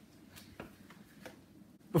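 Faint rubbing and a few soft clicks as an old rubber refrigerator door gasket is pulled out of its retaining slots in the door.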